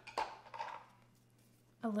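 A brief tap and soft rustle of hands handling craft pieces on a tabletop, then quiet room tone with a low steady hum.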